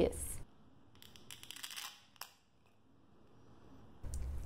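Thin resin 3D-print supports cracking and snapping as they are broken off a miniature by hand: a quick run of small crackles for about a second, then one sharp snap. The supports come away easily, the sign of a well-tuned UV exposure time.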